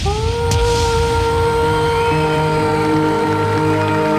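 A young girl singing one long held note into a microphone over full band accompaniment. The note slides up slightly at the start, then holds steady.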